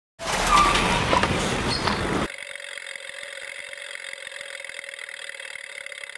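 Outdoor urban street ambience with traffic noise: a loud rush for about two seconds, then an abrupt cut to a quieter steady hum with a few faint fixed tones.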